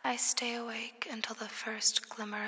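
A spoken-word voice passage in a chillstep track, speaking softly with strong breathy hiss, broken by two short pauses.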